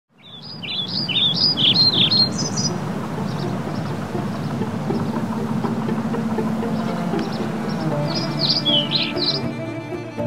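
Birds chirping in two bursts, one at the start and one near the end, over a steady outdoor background, while sustained string music fades in during the second half.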